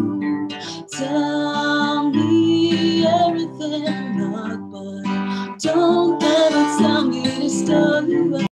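A woman singing to an acoustic guitar played beside her, the voice easing off around the middle before coming back in strongly.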